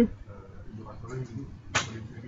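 Faint speech from off the microphone, with a short hissing burst near the end.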